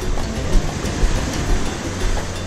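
Steady rumbling wind noise on the microphone, with surf washing along the shore.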